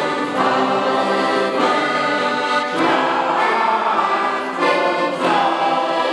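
A men's choir singing together in unison to accordion accompaniment, in long held phrases with brief breaks between them.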